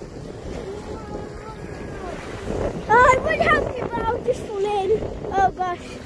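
Wind blowing on the microphone over choppy sea water lapping against a wooden groyne. High-pitched voices call out briefly about three seconds in and again near the end.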